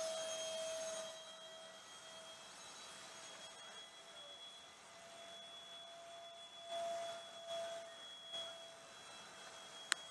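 Twin electric ducted-fan motors of a Dynam Me 262 RC jet, heard faintly from a camera on board: a steady high whine that is louder for the first second, then quieter, with a few short swells near the end. A single sharp click comes just before the end.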